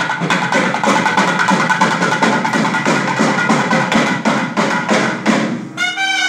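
Thavil barrel drum played in a fast, dense rhythm. Near the end the drumming breaks off and a nadaswaram, a long double-reed wind instrument, begins a held, wavering melody.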